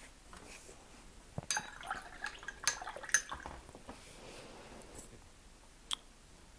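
A watercolour brush rinsed in a glass water jar: a cluster of light clinks and small splashes against the glass, then a couple of single clicks near the end.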